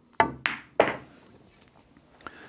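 A pool shot: the cue striking the cue ball and the balls clacking together, three sharp knocks within the first second, each with a short ring.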